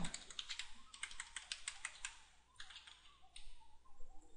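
Typing on a computer keyboard: a quick run of keystrokes, with a short pause a little past halfway and lighter keystrokes after it.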